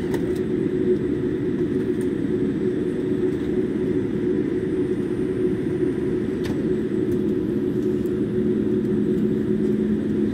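Jet airliner taxiing, heard from inside the passenger cabin: a steady low engine hum with two held tones.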